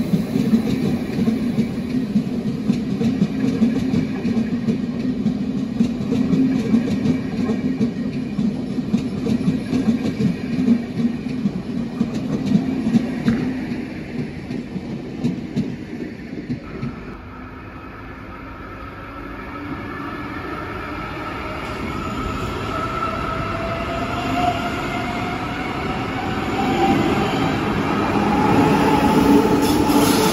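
SBB double-deck electric train rolling out of the station, its wheels clicking and rumbling over the track, for about the first half. Then a double-deck S-Bahn train gets under way at an underground platform, with a whine from its electric drive rising in pitch as it picks up speed and grows louder.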